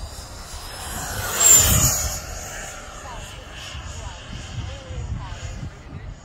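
Wemotec 100 mm electric ducted fan of a Black Horse Viper XL RC jet passing low and fast: a high whine over a rush of air that swells to a peak about one and a half seconds in. As it goes by the whine drops slightly in pitch, then the sound fades as the jet climbs away.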